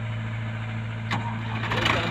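Diesel engines of a Sonalika DI 60 RX tractor and a tracked excavator running steadily at idle. A sharp click comes about a second in, and a louder burst of clatter near the end.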